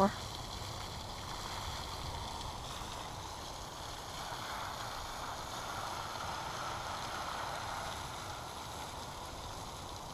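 Steady, even outdoor background hiss with no distinct events: a constant wash of noise such as water or wind at the pond's edge.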